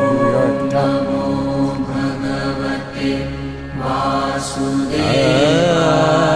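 Devotional music: a mantra chanted by a single voice over a steady sustained drone, the voice wavering in and out.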